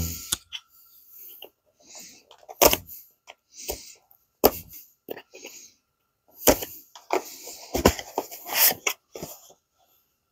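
Handling and unsealing a small cardboard product box: scattered knocks and taps, with rustling and scraping as a plastic razor-blade scraper cuts the seal stickers on its lid, busiest between about seven and nine seconds in.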